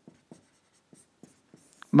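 Marker writing on a whiteboard: a series of faint, short strokes and taps as a line of figures is written.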